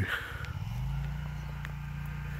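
A motor vehicle's engine running with a low, steady hum. Its pitch rises briefly about half a second in, then holds level.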